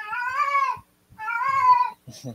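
A cat meowing twice, two drawn-out meows of a bit under a second each, the second starting about a second after the first.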